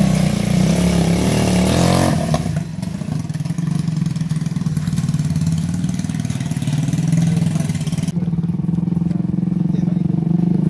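Small engine of a homemade buggy running steadily, with a man talking over it in the first two seconds or so.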